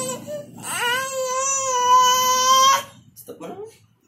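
Baby's high-pitched scream held at one steady pitch: one ends just after the start, and a second lasts about two seconds before cutting off, followed by a few short faint squeaks near the end.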